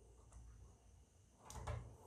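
Near silence, then near the end a couple of soft clicks and handling noise as a SATA power connector is pushed onto a 3.5-inch hard drive.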